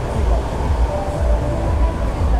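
Wind buffeting the microphone in uneven gusts, a loud low rumble over the steady wash of sea surf.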